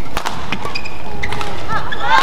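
Badminton rally sounds over steady arena crowd noise: sharp racket strikes on the shuttlecock near the start, then short high squeaks of shoes on the court.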